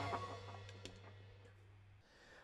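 The last chord of a live rock band, with drums and cymbals, ringing out and fading away over about a second and a half, leaving a steady low hum that cuts off suddenly at the end.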